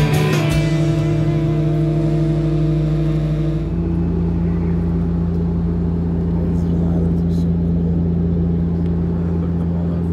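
Steady drone of a turboprop airliner's propellers and engines heard from inside the cabin: a low hum over a rushing noise. A little over a third of the way in, the sound changes abruptly to a lower, more even drone.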